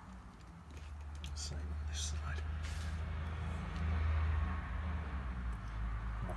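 A low rumble that builds from about a second in and is loudest about four seconds in, with a few faint short scratchy sounds over it.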